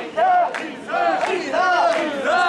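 Mikoshi bearers shouting a rhythmic carrying chant in unison while shouldering the portable shrine, a loud call roughly every three-quarters of a second.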